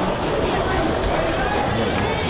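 Indistinct talk of people near the microphone over a steady open-air background rumble.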